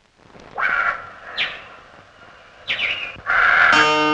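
Film background score: after a moment of quiet, a few brief falling swoops sound, then the music swells and a plucked-string melody comes in near the end.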